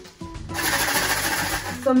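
Homemade plastic water-bottle maraca, part-filled with rice, garbanzo and pinto beans, lentils and pebbles, shaken for about a second and a half starting about half a second in: a dense rattle of grains and pebbles against the plastic.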